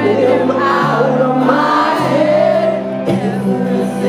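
A live band performing a song with sung vocals over sustained bass notes that change every second or so, heard from the audience in a concert hall.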